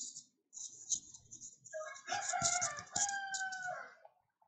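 A long pitched animal call, held in two steady parts with a short break between them, starting about two seconds in and lasting nearly two seconds.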